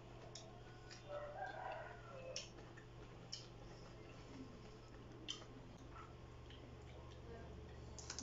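Quiet eating sounds: soft chewing clicks and crunches of raw greens eaten by hand, over a steady low hum. A faint rooster crows in the distance about a second in.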